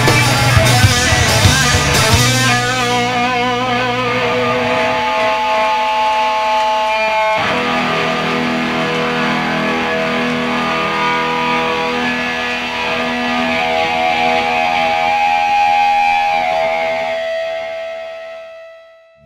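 Live rock band at the end of a song: drums and bass play for the first couple of seconds, then drop out and leave electric guitar ringing in long held notes. The notes waver at first and die away near the end.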